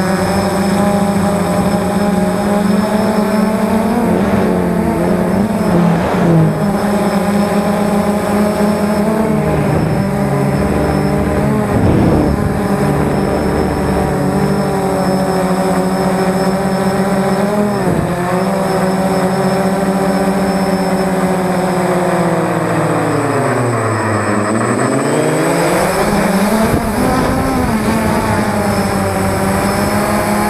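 Drone's electric motors and propellers whining steadily, picked up by the onboard camera. The pitch wavers as the throttle shifts, then drops and climbs back about three-quarters of the way through.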